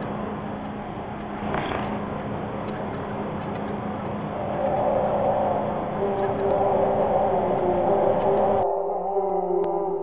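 Ambient drone score: a noisy rumble under a steady low hum, with sustained tones swelling in about halfway. Near the end the rumble cuts off suddenly, leaving wavering held tones.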